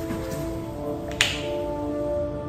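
Soft background music with held notes, and one sharp plastic click a little over a second in: the flip-top cap of a bottle of acrylic craft paint snapping open.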